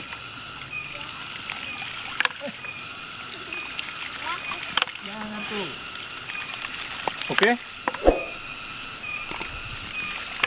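A homemade hydraulic ram pump with twin brass waste valves set side by side, running by itself: its waste valves shut with a sharp clack every two to three seconds over a steady splash of water spilling from the valves.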